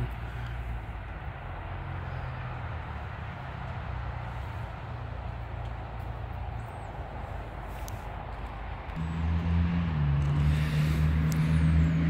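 Road traffic: a steady low hum of vehicles on a nearby road, then about nine seconds in a motor vehicle's engine drone grows louder as it approaches.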